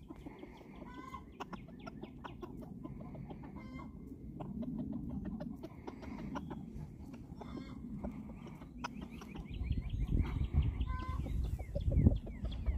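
A flock of laying hens clucking as they forage in the grass. A low rumble comes up over the last couple of seconds.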